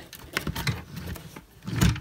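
A wooden drawer being pushed and pulled, scraping and knocking as the clothes stuffed inside stop it from closing. A few separate knocks, the loudest near the end.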